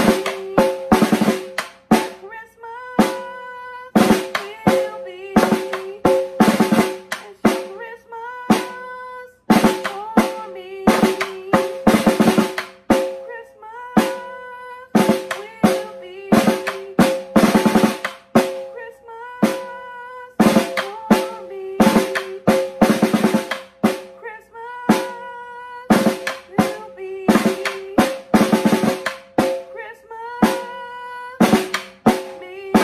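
Snare drum played with sticks in a repeating rhythmic pattern, groups of sharp strokes broken by short packed rolls. The drumhead rings with a steady pitch under the strokes.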